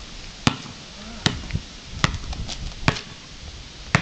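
A basketball being dribbled on a hard outdoor court: five bounces about 0.8 seconds apart, each a sharp smack.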